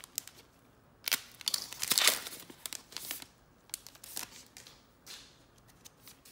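A foil trading-card pack wrapper being torn open: a loud burst of crinkling tearing about a second in, then lighter crinkles and clicks as the wrapper and cards are handled.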